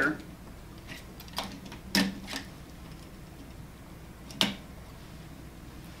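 A small flathead screwdriver prying the lug kit out of a PowerPact B-frame molded case circuit breaker: a few sharp clicks between about one and a half and two and a half seconds in, then another sharp click about four and a half seconds in as the lug kit comes free.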